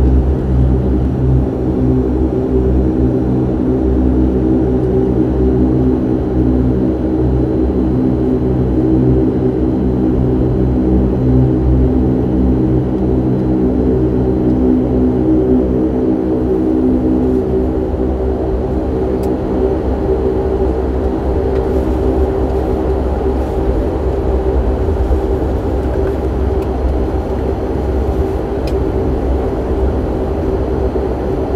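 Bombardier DHC-8-Q400 turboprop engines and propellers at taxi power, heard inside the cabin: a steady drone with several held tones over a low rumble.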